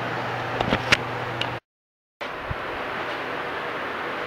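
Steady workshop background noise with a low hum, a few short handling clicks about a second in, then a brief total dropout at an edit cut before the steady noise resumes.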